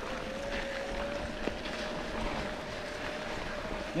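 Electric-assist bike drive motor whining at a steady pitch that creeps slightly higher, over the rumble and crunch of tyres rolling on a sandy dirt trail.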